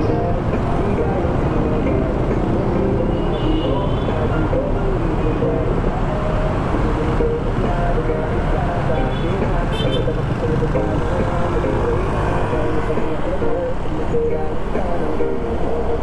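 Motorcycle riding through congested traffic: engines and road noise from the surrounding vehicles, with a couple of brief horn toots.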